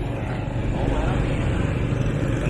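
Steady low rumble of motor scooter engines and street traffic.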